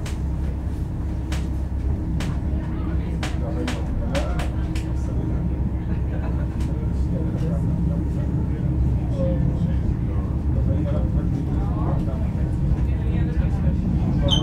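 Commuter train heard from inside the carriage while moving: a steady low rumble of wheels on rail, with sharp clicks now and then as the wheels run over rail joints and points, mostly in the first half. Voices murmur faintly in the background.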